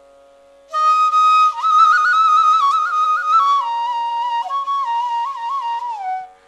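Carnatic bamboo flute playing a slow, ornamented melody with sliding notes and quick turns, entering under a second in over a steady drone, with no percussion.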